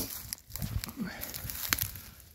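Quiet footsteps and camera handling noise, with a couple of sharp clicks and a faint low mutter about half a second in.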